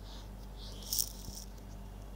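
Steady low hum of the recording setup, with soft hissy breaths on the microphone and a short sharp rattle-like noise about a second in.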